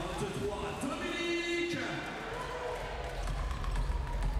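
Live court sound of a handball game in an indoor hall: the ball bouncing on the court, with players' calls and crowd noise in the background.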